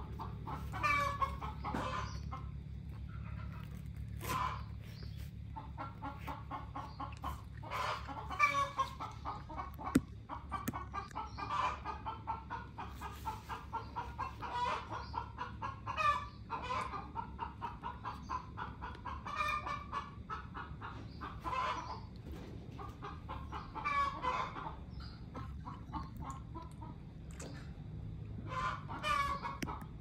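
Chickens clucking in a long run of short repeated calls, over a steady low hum.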